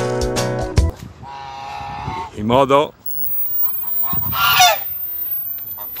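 Domestic geese honking: three separate calls, after a strummed guitar tune cuts off about a second in.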